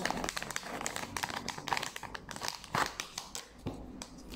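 Clear plastic packaging crinkling and rustling as a selfie stick tripod is handled and pulled out of its bag, with one sharper crackle about three seconds in.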